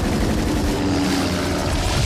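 Film-soundtrack sound of a single-engine propeller aircraft flying in, its engine a steady, loud drone.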